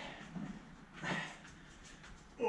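A man breathing hard while exercising: two forceful, breathy exhalations, the second and stronger about a second in.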